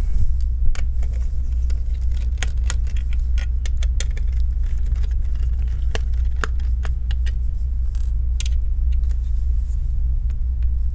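Scattered small metallic clicks and light rattles as small screws and internal laptop parts are handled with a precision screwdriver, over a steady low hum.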